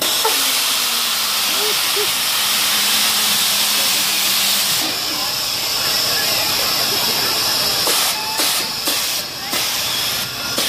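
Loud hiss of compressed air from a helicopter-style amusement ride's air system, coming on suddenly and holding steady with a faint hum for about five seconds. From about eight seconds in it goes on in short sputtering pulses.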